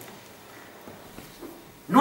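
A pause in a man's sermon. His last word dies away in the hall, then there is quiet room tone with a faint brief sound about one and a half seconds in, and his voice resumes at the very end.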